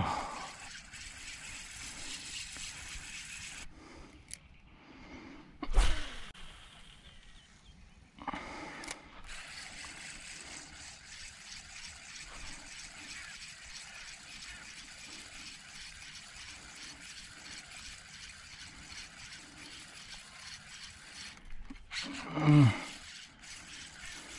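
Spinning reel being cranked through a lure retrieve: a steady soft whir with fine, even ticking. A sharp thump comes about six seconds in, and a short vocal sound near the end.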